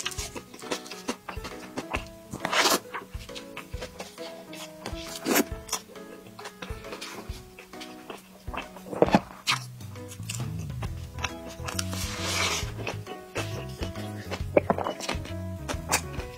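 Background music with a simple melody, a lower bass line joining about ten seconds in, over close-up eating sounds: bites and chewing of a hamburger with a handful of sharp crunchy clicks.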